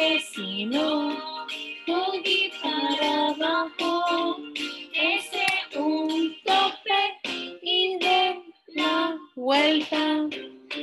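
A children's song sung in Spanish by children and a woman together, with musical backing, in short phrases with brief gaps between them.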